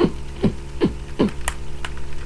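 A man's short fit of about four coughs in quick succession, with a steady electrical hum underneath. Two sharp clicks follow near the end.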